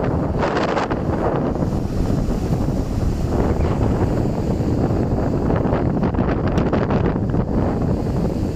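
Strong monsoon wind buffeting a smartphone's microphone: loud, steady wind noise, with surf breaking on the shore beneath it.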